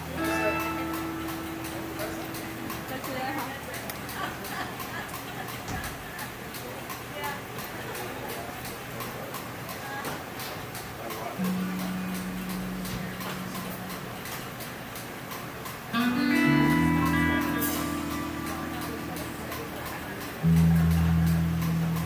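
Amplified electric guitar and bass playing live through a PA, with a few sustained notes near the start and in the middle and louder held chords from about three-quarters of the way through, over people talking.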